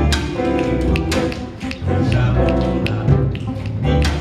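Live acoustic-electric ensemble: upright double bass, grand piano and electric bass guitar playing together, the deep bass line prominent, with repeated sharp percussive taps through it.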